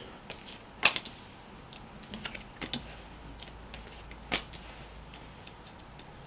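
Tarot cards being drawn and laid down on a table: sharp taps about a second in and again past four seconds, with fainter card handling between.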